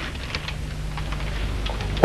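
Faint, scattered clicks from the controls of a small portable set as they are worked by hand, over a low steady hum.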